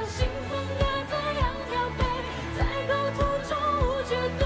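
A woman singing a Mandarin pop song live into a microphone over band backing, with a steady kick-drum beat.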